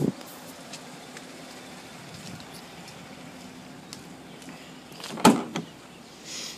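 A faint steady hum with a few light clicks, then one sharp thump about five seconds in.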